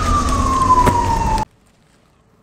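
Emergency vehicle siren: one long tone that slowly falls in pitch, over a low rumble. It cuts off suddenly about a second and a half in.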